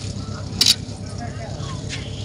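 Low background voices of a few people standing around outdoors, with one short hiss just over half a second in.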